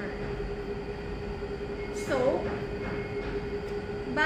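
A steady mechanical hum with one constant tone runs throughout. A brief voice-like sound rises and falls about two seconds in.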